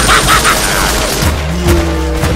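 Rapid automatic gunfire that breaks off about half a second in, followed by music with steady low notes.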